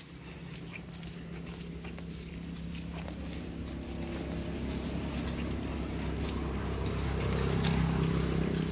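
Footsteps on a wet dirt path, with the steady low hum of an engine growing louder toward the end.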